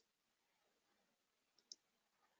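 Near silence, broken by a faint, short computer-mouse click near the end.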